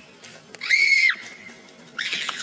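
A boy's short, very high-pitched shriek lasting about half a second, with a second cry just starting at the very end.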